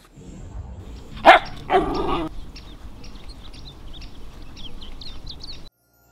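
Two loud, short animal calls, the first about a second in and the second just after, followed by a run of faint, high chirps. The sound cuts off suddenly shortly before the end.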